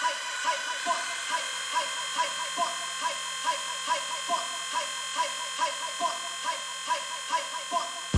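Electro track in a breakdown with the kick and bass taken out: a buzzy synth pattern pulses a little over twice a second over held high synth tones.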